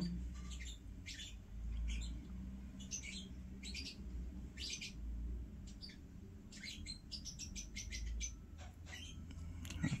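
Faint, short bird chirps at irregular intervals, with a quick run of them about two-thirds of the way through, over a low steady hum.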